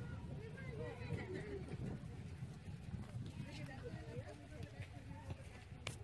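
Distant voices of several people talking and calling out across an open field, too far off for words, over a steady low rumble. One sharp knock comes just before the end.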